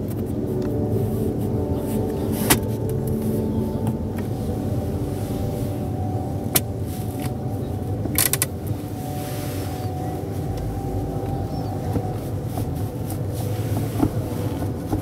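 Steady exhibition-hall din with a few sharp plastic clicks from the car's centre-console fittings, and a quick run of ratchet clicks about eight seconds in as the handbrake lever is worked.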